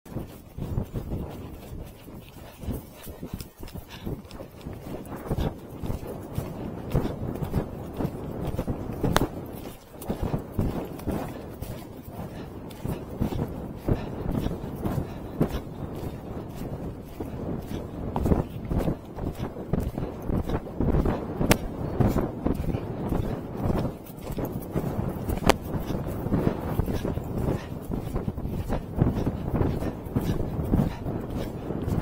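Arabian horse moving fast on grass, its hoofbeats thudding on the turf, with heavy wind buffeting the rider's camera microphone throughout.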